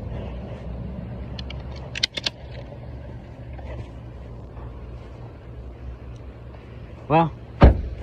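Car cabin noise while driving: a steady low rumble of road and engine. A few sharp clicks come about two seconds in, and near the end a brief voice sound is followed by a loud thump.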